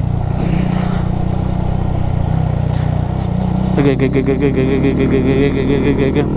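Honda Monkey 125's single-cylinder four-stroke engine running steadily, with rumbling noise from the rough, potholed road. About four seconds in, a higher, pulsing note joins the engine sound.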